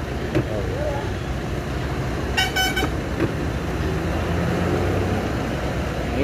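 A steady low rumble of car and road noise from inside a moving car with its window open. A vehicle horn sounds once, for about half a second, about two and a half seconds in.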